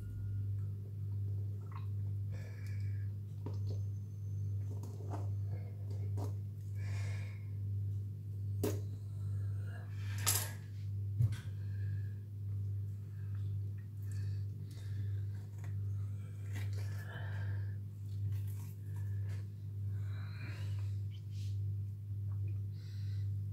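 Small clicks and scrapes of a knife and hands working a rabbit carcass on a marble counter, with a sharp metallic clink of the knife against the stone a little before the middle and a couple of smaller knocks around it. Under it all a steady low electrical hum swells and fades about once a second.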